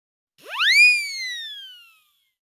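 A cartoon sound effect: a whistle-like tone that swoops up fast about half a second in, then glides slowly down and fades out.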